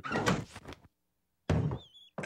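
Cartoon sound effect of a wooden sash window sliding up with a rough scrape, then a sudden thunk about a second and a half in.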